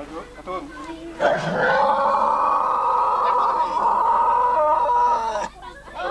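A pig squealing as it is held down under poles and stuck for slaughter: one long, loud, strained squeal starting about a second in and cutting off abruptly near the end.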